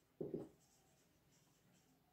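Marker pen writing on a whiteboard: faint, short scratchy strokes as a word is written, with a brief soft low sound a fraction of a second in.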